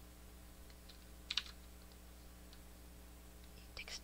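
A few faint clicks on a computer keyboard, the loudest a quick double click about a second and a half in, over a steady low hum.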